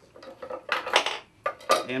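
Kitchen utensils and dishes clattering at a cutting board beside a stockpot: a few quick knocks and scrapes, loudest about a second in and again near the end.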